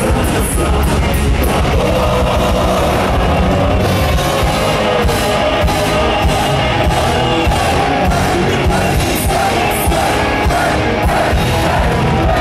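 Heavy metal band playing live: distorted electric guitars and a drum kit with a male lead vocalist singing, loud and continuous.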